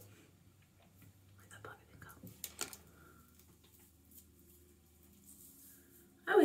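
Faint rustling with a few soft crackles of a Velcro hair roller being unwound and pulled out of hair, loudest about two and a half seconds in.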